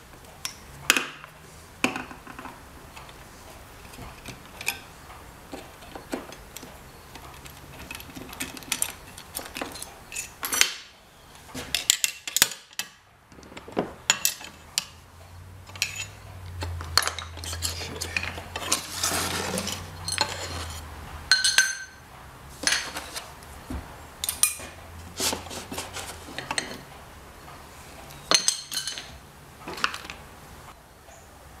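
Small metal parts and hand tools clinking and knocking irregularly against a cast-iron bearing base and wooden bench as clamps and washers are taken off a freshly poured babbitt main bearing. A low hum joins for several seconds in the middle.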